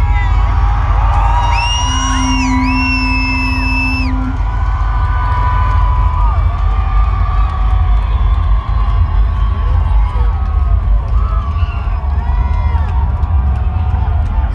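Loud live hip-hop music through a festival stage's PA, with steady deep bass, and crowd whoops and cheers over it. About two seconds in, a few high held tones sound for about two seconds.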